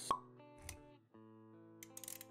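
Intro music with a sharp pop sound effect just after the start, the loudest thing here, and a short low thud a little later over held notes. The music drops out briefly about a second in, then resumes.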